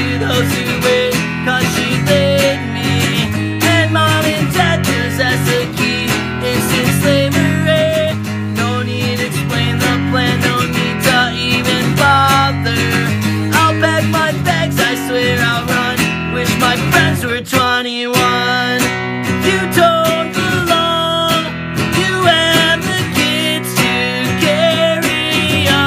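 Acoustic guitar strummed in a driving rhythm with a man singing along, a solo acoustic cover of a pop-punk song. The strumming breaks off briefly about three-quarters of the way through, then picks up again.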